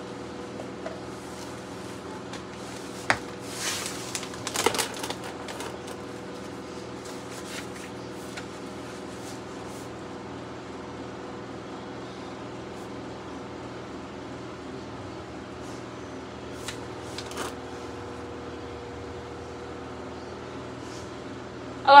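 Steady room hum with a few brief knocks and rustles of books being handled on a shelf: a sharp click about three seconds in, a busier patch of shuffling about four to five seconds in, and a couple of faint taps later on.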